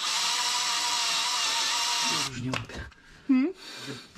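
Hand-held drill running steadily, drilling into a stubborn bolt in a Perkins 4.236 engine block; it stops a little over two seconds in. A short voice sound comes near the end.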